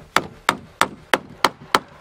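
Hammer driving a nail into timber: six even blows, about three a second.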